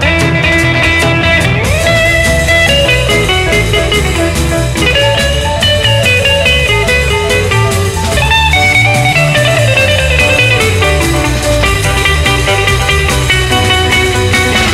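1962 demo recording of an instrumental guitar combo: electric lead guitar playing the melody with occasional sliding notes, over a stepping bass guitar line and drums.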